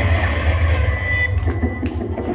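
Live rock band playing loud, led by electric guitar with bass underneath. The sound thins out about one and a half seconds in.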